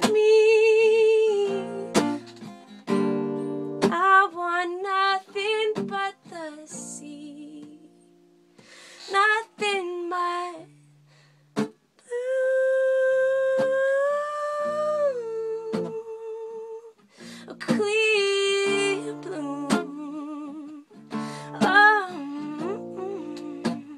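A woman singing a slow song with vibrato, humming-like with no clear words, over plucked acoustic guitar; about twelve seconds in she holds one long note for about three seconds before dropping in pitch.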